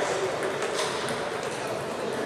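Table tennis balls clicking off bats and tables, a few sharp knocks in the first second, over a murmur of voices in a large sports hall.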